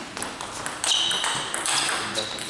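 Table tennis rally: the plastic ball clicking off the bats and table in quick succession. From about a second in there are high squeaks, from shoes on the hall floor.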